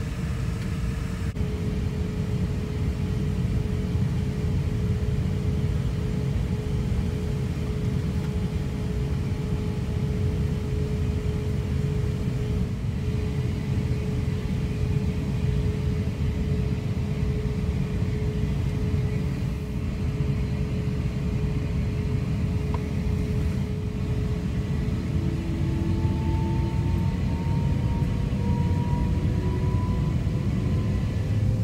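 Airbus A350-900 cabin noise while taxiing: a steady low rumble with a steady hum from the idling Rolls-Royce Trent XWB engines and air systems. From about 25 seconds in, a whine rises in pitch as the engines spool up to roll toward the runway.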